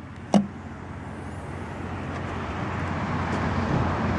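A single sharp click as the pivoting VW emblem handle releases the rear hatch latch of a 2012 Volkswagen Beetle, followed by a steady rushing outdoor noise, like distant traffic, that slowly grows louder.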